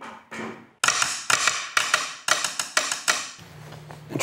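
A run of about a dozen quick, sharp drum strikes played by hand, then a low steady hum starting near the end.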